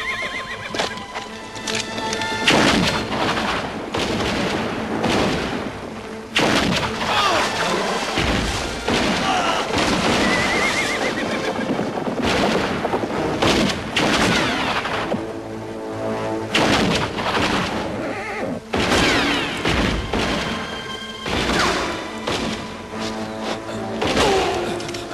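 Gunfight: rifle and pistol shots go off irregularly, every second or two, over background music. A horse whinnies around the start and again about ten seconds in.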